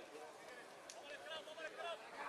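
Faint voices at a distance over a low hiss, with no one speaking close to the microphone.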